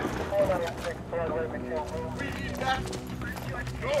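Quick, hard footsteps of several people running, mixed with indistinct hurried voices.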